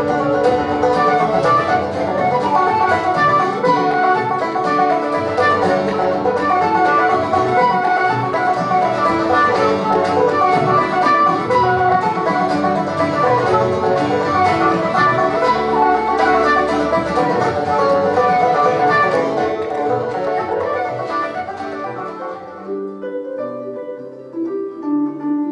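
Irish traditional dance tune played at a fast pace by a small group of instruments led by a plucked tenor banjo, with bowed fiddle alongside. The playing thins out and drops in level over the last few seconds.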